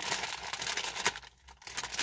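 Walkers Salt 'n' Shake crisp packet crinkling as a hand rummages inside it for the salt sachet, with a brief lull a little past halfway.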